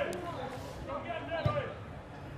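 Voices shouting across an outdoor football pitch, with a single dull thump of a football being kicked about one and a half seconds in.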